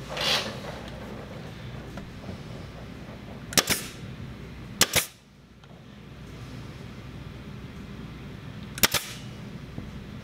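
Brad nailer firing three times into wooden sticks, each shot a sharp double crack. The first two come a little over a second apart and the third about four seconds later. It is pinning down the sticks that hold wood pieces under the resin in a mold.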